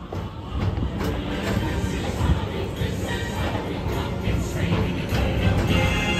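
PeopleMover ride car running along its elevated track with a steady rumble, music playing over it, and a few faint bangs from the fireworks show.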